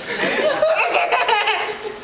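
People laughing, with a run of quick bursts of laughter about a second in.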